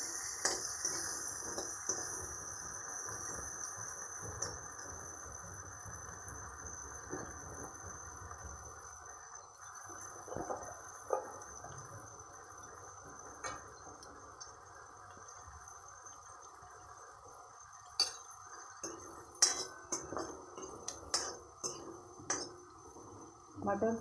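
Lightly boiled green peas frying gently in oil and butter in a metal kadhai, with a faint sizzle that dies down over the first several seconds. A steel ladle stirs and scrapes the peas, clicking sharply against the pan several times near the end.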